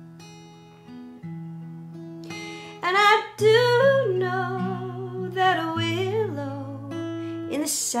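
Acoustic guitar playing ringing held notes, with a woman's singing voice coming in over it about three seconds in.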